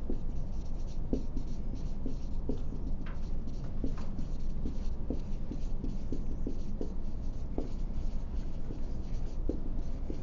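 Someone writing by hand: a run of short, faint strokes, several a second, over a steady low hum.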